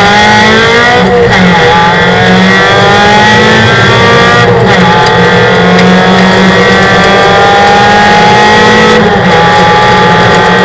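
Honda race car's four-cylinder engine heard from inside the cabin, run hard under full acceleration: its pitch climbs steadily and drops briefly at each upshift, about a second in, about halfway, and again near the end.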